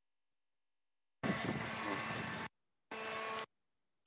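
Steady machinery hum with several fixed tones, heard in two stretches that start and stop abruptly, as a video call's noise suppression lets it through and cuts it out.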